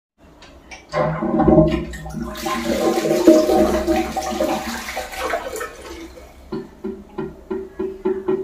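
Flush water rushing through a ceramic Indian squat toilet pan, starting about a second in and dying away, with background music with a steady beat coming in near the end.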